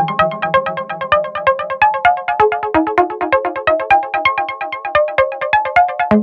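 Electronic dance music: a fast staccato synth melody of short, bright notes, about eight a second. The deep bass thins out and drops away after the first second or two.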